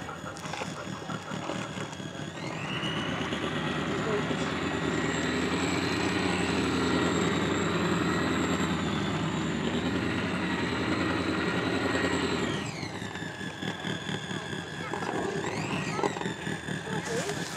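RC model tug's electric drive motor and propeller running: a whine that rises about two and a half seconds in, holds steady, and falls away near the last few seconds, then rises briefly again at the very end.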